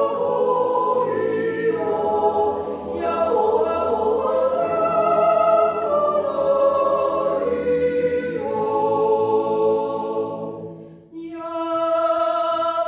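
Mixed Swiss yodel choir singing a cappella in close harmony, holding long chords that shift every second or so. The sound fades to a brief break near the end, then a new chord begins.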